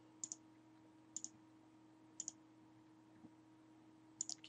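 Three computer mouse clicks about a second apart, each a quick pair of ticks, against near silence.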